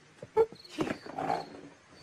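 A person's short "uh" about half a second in, followed by a rough, growly vocal sound.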